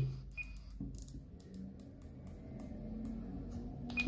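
Quiet handling of an Icom ID-52 handheld transceiver during character entry: faint clicks from its dial and keys and one short high key beep less than half a second in, over a faint low hum.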